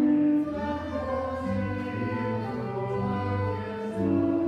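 A hymn sung by a group of voices with music, in long held notes that grow quieter about half a second in.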